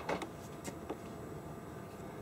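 A few faint clicks in the first second from the oscilloscope's front-panel buttons and knob being worked, over quiet room noise.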